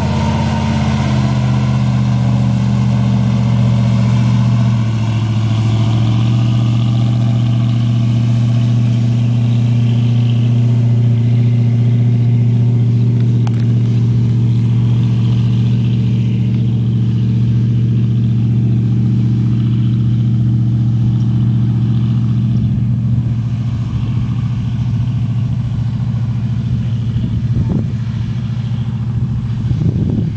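Engine of a full-track swamp buggy running as it drives across the marsh: a steady, loud low drone whose pitch shifts slightly about five seconds in.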